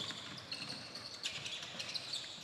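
Basketball being played on a hardwood gym floor, faint: sneakers squeak in short high bursts and the ball bounces as players drive to the basket.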